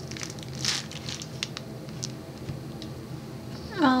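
Clear plastic sticker wrapping crinkling as it is pulled off a stack of stickers, with scattered small crackles and one louder rustle near the start.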